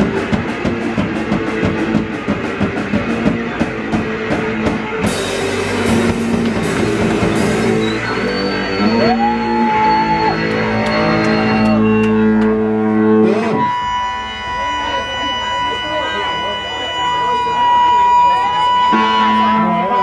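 Live D-beat hardcore punk band playing loud: fast drums with distorted guitar and bass. About two-thirds of the way through, the drumming drops out and long, steady, ringing guitar tones are held, as the song winds down.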